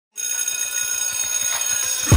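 Shimmering, bell-like high tones held steady, coming in a moment after the start, with faint quick low pulses beneath, about eight a second: the opening of an intro jingle.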